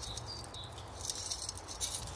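Fertiliser pellets sprinkled from a metal scoop, pattering faintly onto the soil and strawberry leaves of a hanging basket.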